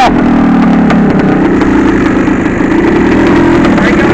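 Two-stroke dirt bike engine running at a steady, fairly even speed while under way, its pitch rising slightly near the end.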